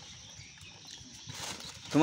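Faint rustling of newspaper and light knocks of dragon fruit being handled in a newspaper-lined cardboard box, growing louder in the second half.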